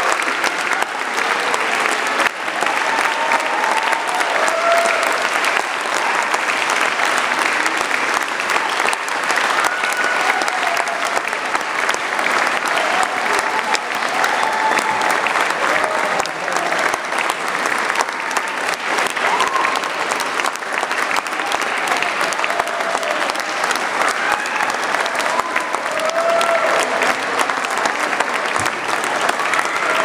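Audience applauding steadily in a concert hall, with scattered voices from the crowd heard over the clapping.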